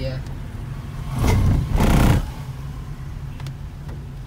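Cabin sound of a manual Hyundai Verna moving slowly in second gear: a steady low engine and road hum. About a second in, a louder rushing sound swells for about a second and fades.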